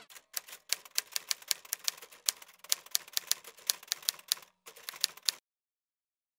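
Typewriter sound effect: a rapid, uneven run of key clacks, several a second, that stops suddenly about five seconds in.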